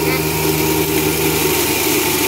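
Corn grinding mill running steadily, grinding dried corn kernels into meal, with an even mechanical hum throughout.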